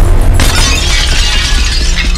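Loud TV intro music with a deep bass under it, and a glass-shattering sound effect that breaks in about half a second in.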